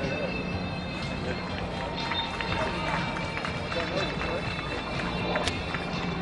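Busy outdoor ambience with voices and music under it, with a scatter of light clicks or taps in the middle.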